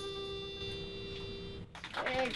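The final held chord of an acoustic band with harmonica and strings ringing out and slowly dying away, cut off abruptly near the end.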